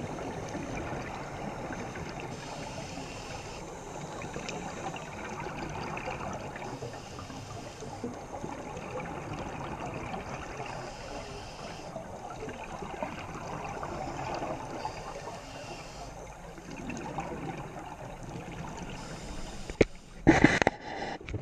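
Underwater sound on a scuba dive: a steady wash of water noise with bubbling from divers' regulator exhausts, swelling and easing every few seconds.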